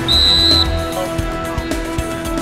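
A short, high whistle blast of about half a second near the start, typical of a referee's whistle stopping play. It sounds over background music.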